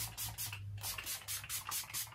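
A small hand-held spray bottle pumped in a quick run of short hisses, several a second.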